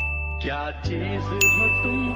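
A bright pop-up ding sound effect strikes about one and a half seconds in, over background music with a steady low bass.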